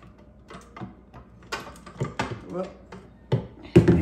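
Clicks and clinks of a KitchenAid stand mixer's metal flat beater being worked off its shaft over the steel mixing bowl, with a louder knock near the end.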